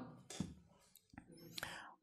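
A very quiet pause in a man's talk, holding only faint breath and a few small mouth clicks picked up by his lapel microphone.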